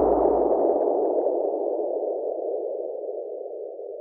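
Fading tail of an added editing sound effect: a muffled band of hiss that dies away slowly over the whole stretch, with a low rumble dying out in the first half second.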